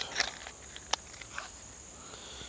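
A few short, light clicks and crackles over a faint steady background hiss, three or four of them spread through the two seconds.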